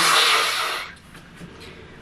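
A woman blowing her nose hard into a paper tissue, one short rushing blow of about a second that then stops. It is a dry blow: nothing comes out despite her sinus pressure.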